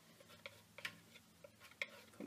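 A hand pressing torn mulberry paper down onto a cold-wax-coated art board, giving a few faint, irregular light clicks and taps.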